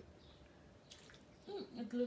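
Near silence in a small room for about a second and a half, with a few faint soft clicks, then a woman's voice starts murmuring near the end.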